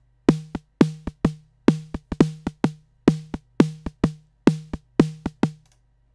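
Synthesized snare drum from the FXpansion Tremor software drum synth playing a fast step pattern, about twenty hits with a short pitched ring and a noisy rattle. The hits come at differing strengths, the velocity changing their loudness and how long they ring.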